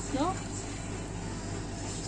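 A short spoken word, then a steady low background hum with no distinct events.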